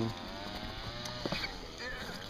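A man's long hummed 'ummm' trailing off quietly, then low background with a couple of faint clicks.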